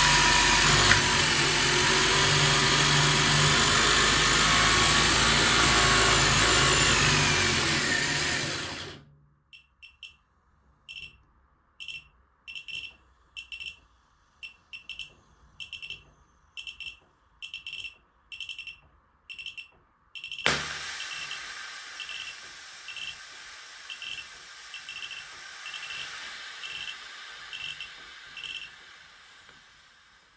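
Toy Story RC Crash Buggy's electric drive motor running loud on a bench power supply turned up far past its rated voltage, then cutting out about nine seconds in. Short high beeps follow, about one and a half a second, and a sudden crack about two thirds through starts a hiss that slowly fades as the overloaded toy burns out and smokes.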